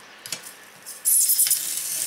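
A knife blade drawn along a metal straight edge, scoring foil-faced foam insulation board: after a couple of light clicks, one scratchy stroke starts about a second in. Each pass cuts a little deeper into the board.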